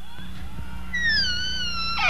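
A high, wavering, whistle-like electronic tone that sinks slightly in pitch, starting about a second in, over a steady low electrical hum; the opening of the act's recorded music.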